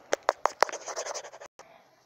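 Close handling noise: a hand and a small plastic toy figure scratching and tapping right at the phone's microphone. Four quick sharp taps, then a scratchy rub that cuts off about one and a half seconds in.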